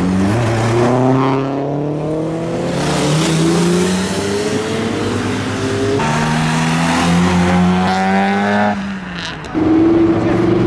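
Car engines accelerating hard as modified cars pull away one after another, the pitch rising in steps through the gears. The sound changes abruptly about six seconds in and again near the end, where a new, louder engine starts revving.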